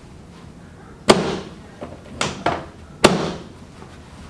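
Portable chiropractic table knocking sharply under hand thrusts on the back of a patient lying face down, as in a drop-table adjustment. There are loud knocks about one and three seconds in, with a quick double knock between them.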